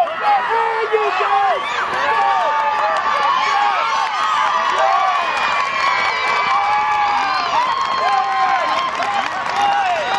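Football crowd of spectators cheering and shouting, many voices at once, swelling about a second in and staying loud.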